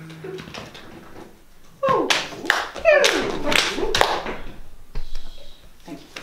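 A group improvising sounds on cue with voices, claps and taps. After a quiet start, a loud cluster of sliding vocal noises and sharp claps comes about two seconds in and lasts about two seconds, then thins to a few scattered sounds.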